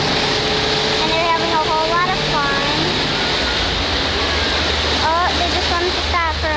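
Motorboat underway towing a tube: a steady engine drone under rushing water and wind noise. Voices call out briefly a couple of times.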